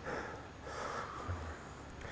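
Faint heavy breathing of a man straining through a set of dumbbell front squats, two breaths in quick succession.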